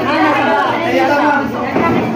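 Several people talking at once: overlapping voices and chatter in a large, busy room.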